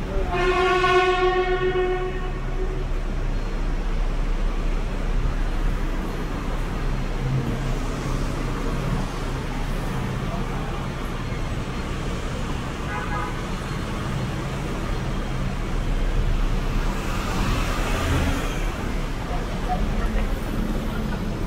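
City street traffic: a steady rumble of passing vehicle engines. Just after the start a vehicle horn sounds one held note for about two seconds.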